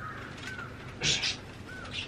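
Birds calling: short arched chirps repeating about every half second, with a louder harsh call about a second in.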